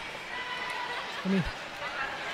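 Speech only: a man's single short word over low, steady background noise.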